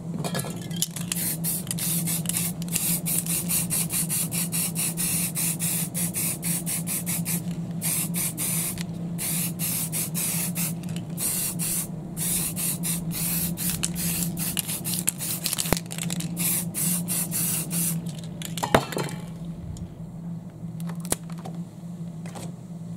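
Aerosol spray paint can spraying in many short, quick bursts of hiss, stopping about 18 seconds in. A single sharp click follows shortly after.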